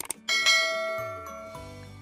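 A mouse-click sound effect followed by a bright notification-bell chime that rings and fades over about a second and a half, over soft background music.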